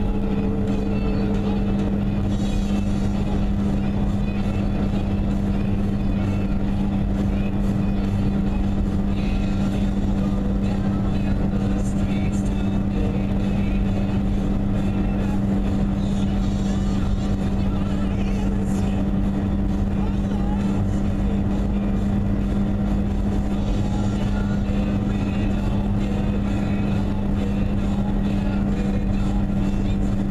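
Car cruising at steady highway speed, heard from inside the cabin: engine and tyre noise with a constant low hum.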